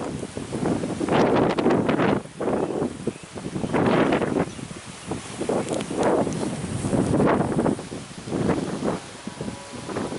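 Wind buffeting the microphone in repeated gusts, each about a second long, with leaves rustling.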